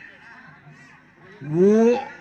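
A quiet pause, then about a second and a half in a man's loud, drawn-out exclamation "ōh" into a microphone, its pitch rising.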